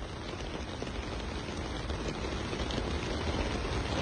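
Steady rain falling, an even hiss with a low rumble of wind, growing slightly louder.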